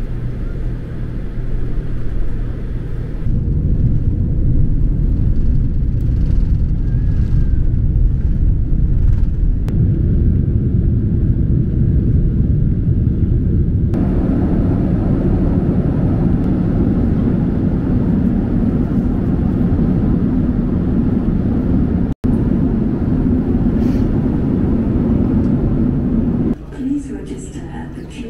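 Airliner cabin noise heard from a passenger seat: a steady low rumble of jet engines and airflow. It shifts abruptly in tone a few times, and there is one brief dropout near the end.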